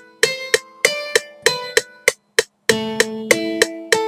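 Playback of a keyboard-made beat, recorded from a Korg as audio and re-timed by hand: sharp percussion hits about three a second over sustained chords and plucked-sounding notes. The music drops out briefly a little past the middle, then comes back.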